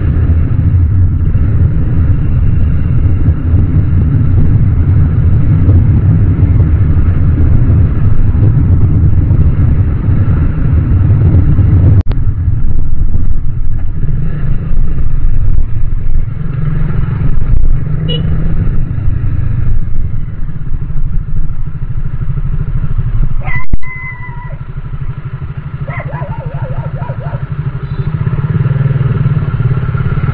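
Bajaj Dominar 400's single-cylinder engine running steadily under the rider at low highway speed, with road and wind noise. About two-thirds through there is a sharp knock, after which the sound drops noticeably quieter as the bike slows almost to a stop, and a few brief higher-pitched tones follow.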